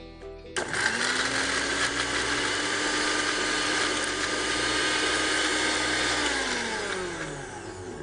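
Electric kitchen mixer grinder with a stainless-steel jar, grinding ingredients. It starts suddenly about half a second in and runs steadily, then from about six seconds its pitch falls and it fades as the motor spins down after being switched off.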